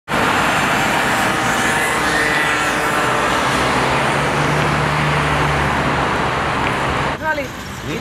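City road traffic: a steady wash of cars passing, with one vehicle's low engine hum standing out for a couple of seconds midway. The traffic noise cuts off abruptly a little before the end, where a voice starts speaking.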